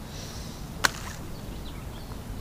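A single sharp click a little under a second in, over a steady low outdoor rumble.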